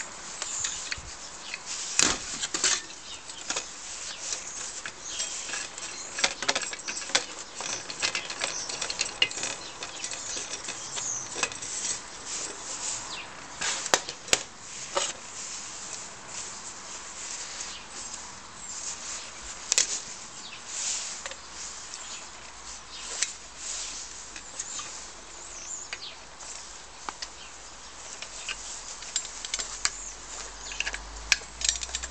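Handling noise from an old Optimus 415 paraffin blowtorch being stripped of the cord wrapped round it: irregular clicks, taps and rustles of metal parts and string being worked by hand and with side cutters.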